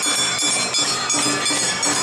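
Awa Odori hayashi parade music: metal hand gongs ringing and a bamboo flute over a steady, repeating drum and shamisen beat.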